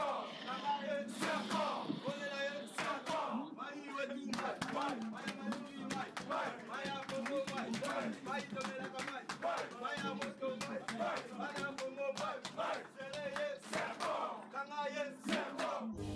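A group of footballers chanting and shouting a war cry together, many voices at once, over frequent sharp claps.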